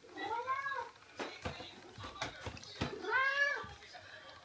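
Domestic cat meowing twice, each call rising then falling in pitch and lasting under a second, the second near the end. A few short clicks fall between the two meows.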